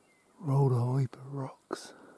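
A man's voice, two short utterances about half a second and a second and a quarter in, followed by a brief hiss; the words are not made out.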